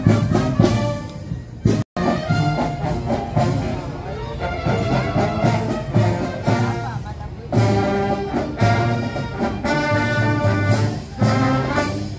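Marching brass band playing, with sousaphones on the bass and a steady drum beat under the horns. The sound drops out for an instant about two seconds in.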